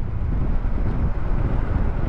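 Steady wind rush on the microphone over the low rumble of a Bajaj Dominar 400 motorcycle riding at expressway speed.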